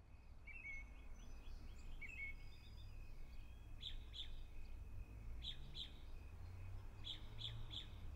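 Faint birdsong outdoors: short high chirps every second or two, coming in pairs and threes in the later part, over a steady low background rumble.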